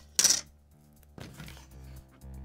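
A single short, sharp clack about a quarter second in, as small hard parts are handled on a wooden table, with quiet background music under it.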